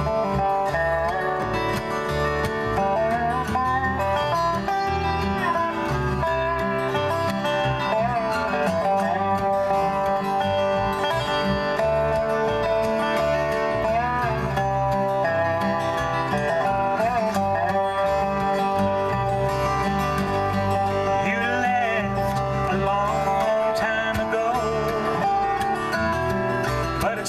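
Instrumental intro played on dobro, strummed acoustic guitar and electric bass in a country-folk style, the dobro's notes sliding in pitch over a steady bass line.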